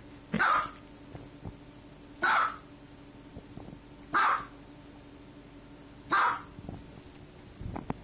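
A small dog barking: four single high barks, evenly spaced about two seconds apart.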